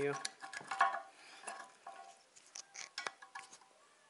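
A metal tool prying at a small rusted metal nut that has been drilled through to split it, giving scattered light metallic clicks, scrapes and short clinks, the sharpest about three seconds in.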